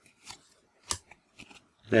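Trading cards being moved through the hands: a few short papery snaps and slides as one card is pulled off the stack, the sharpest about a second in.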